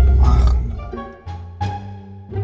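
Low engine drone of a BMW M5 Competition's twin-turbo V8 heard inside the cabin during a hard pull, cut off about half a second in. It is followed by a short musical sting of a few separate held low notes, an edited-in 'fail' sound effect.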